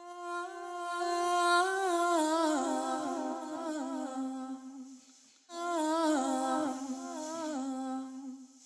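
A solo singer's wordless, unaccompanied vocal, hummed in two phrases that each step downward in pitch, the second starting about five and a half seconds in.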